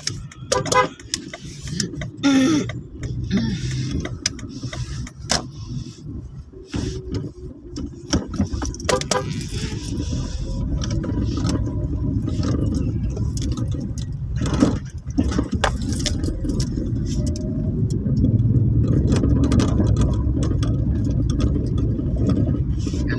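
Car running along a street, heard from inside the cabin: a steady low rumble of engine and road noise. Scattered sharp clicks and rattles fall mostly in the first half. The rumble grows steadier and slightly louder in the second half.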